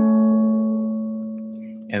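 Ukulele notes on the two top strings, rolled just before and left ringing, fading slowly over about two seconds.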